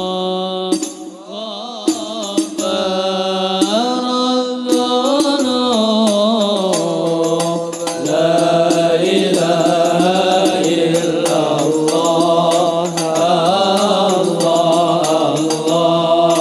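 Arabic devotional sholawat singing: a solo male voice sings a long, ornamented melodic line through a microphone, and about halfway through more men's voices join and it gets louder. Light taps from hand-held frame drums run underneath.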